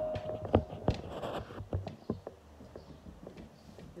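Handling noise: a string of light knocks and taps from hands on the recording device and the acoustic guitar, thinning out after the first two seconds. In the first half second a guitar note is still ringing out and fading.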